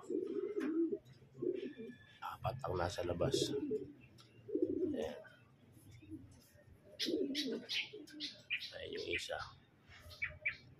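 Homing pigeons cooing: a run of short, low coos coming in separate bursts.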